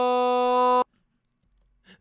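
Melodyne auditioning a single selected vocal note as a steady held tone at one fixed pitch, near the B below middle C. It cuts off abruptly a little under a second in.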